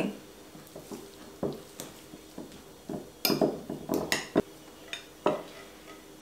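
Metal fork clinking and scraping against a glass bowl while crumbling feta cheese and mixing the filling, in irregular taps.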